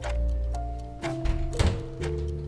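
Background music of held notes stepping in pitch, with a low knock from the front door's handle and lock being worked about a second and a half in.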